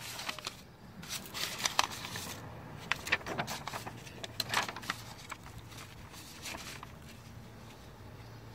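Scattered scuffs, clicks and rustling of someone shifting about and handling the camera, over a faint steady low hum.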